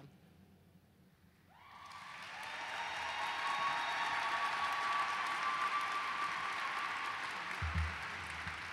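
Audience applause, swelling from near quiet about a second and a half in and then holding steady. A brief low thump comes near the end.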